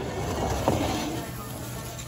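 A foil-covered cast-iron pan being slid out across the stone floor of a wood-fired oven, a rasping scrape that fades out after about a second and a half, with one small click partway through.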